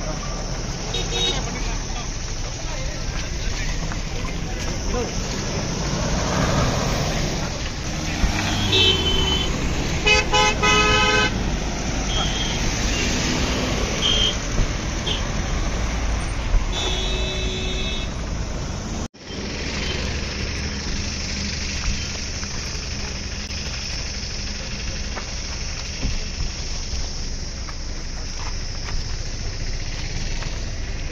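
Car horns honking among a crowd of voices and outdoor noise: a longer honk about ten seconds in, another around seventeen seconds, and a few short toots between. The sound drops out for a moment just after halfway.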